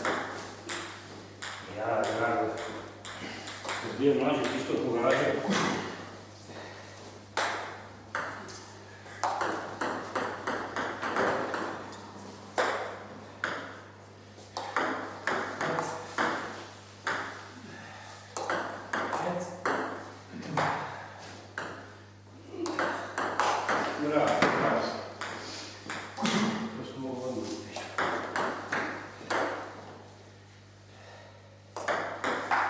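Table tennis ball being hit back and forth in rallies: quick runs of sharp clicks as the ball strikes the paddles and the table, with short gaps between points.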